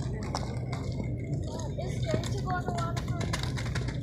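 Steady low hum of outdoor background noise with faint distant voices now and then.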